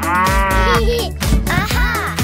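Cartoon cow mooing, one long call rising and falling in pitch, over a children's song with a steady drum beat.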